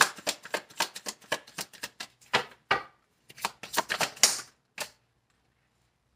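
A tarot deck being shuffled by hand: a quick run of crisp card flicks and slaps that stops about five seconds in.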